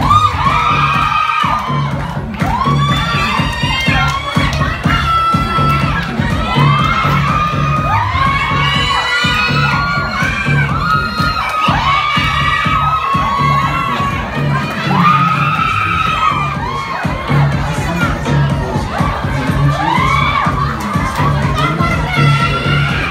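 High-pitched shouting and cheering voices over dance music with a steady pulsing bass beat.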